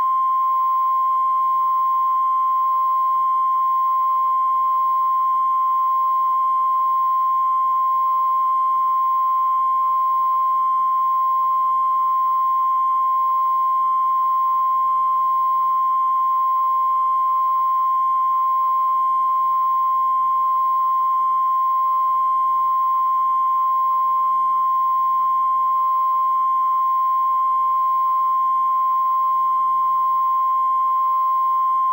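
Videotape line-up tone: a single steady test tone that runs unbroken under the colour bars, at one constant loudness.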